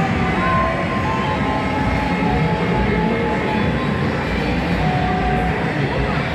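Steady low rumble of an indoor arcade with a coin-operated kiddie ride running, with faint electronic tones from the game machines over it.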